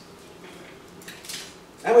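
Quiet pause in a lecture room: faint room tone with a light click about a second in and a brief hiss just after, then a man's voice starts near the end.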